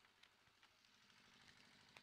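Near silence, with a few faint ticks.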